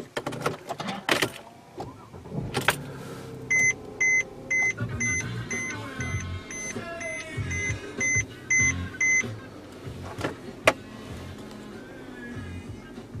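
Electronic beeping: about a dozen short, even beeps at two a second, starting a few seconds in and stopping after about six seconds. Around them are clicks and knocks from hands working the car's interior controls, with one sharp click near the end, the loudest sound.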